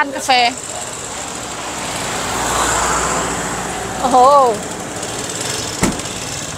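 A motor vehicle passing close on the street: its engine and road noise swell to a peak about halfway through and then fade. A short sharp knock comes just before the end.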